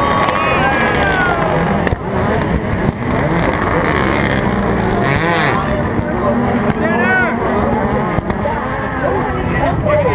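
Rallycross race cars passing at speed, engines revving up and falling away again and again through gear changes and corners, several cars at once over a steady roar of engine noise.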